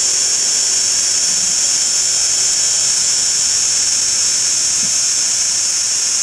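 A steady, unbroken high-pitched buzzing hiss at an even level, with no pauses.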